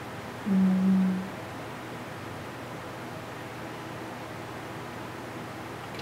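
A woman's short hummed "mm" on one steady pitch, lasting under a second about half a second in, over a steady low hiss.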